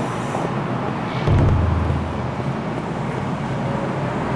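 Steady background noise of road traffic, with a low rumble that swells about a second in and fades away over the next second.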